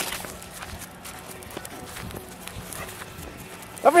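Footsteps crunching irregularly on a dirt track while walking, faint and uneven. Near the end a man shouts loudly to call dogs.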